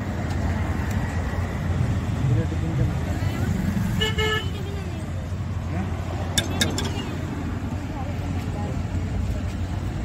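Street traffic rumble with voices in the background; a vehicle horn toots once, briefly, about four seconds in. A couple of seconds later come a few sharp clinks of a steel serving ladle against a large steel pot.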